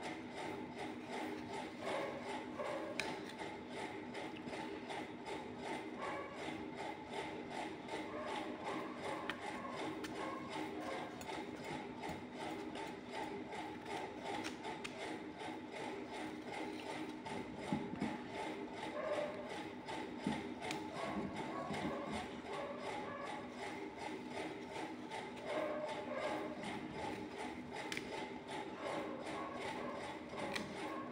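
A steady mechanical whirr with a fine, rapid rattle, like a small motor or fan running, with a few soft knocks around two-thirds of the way in.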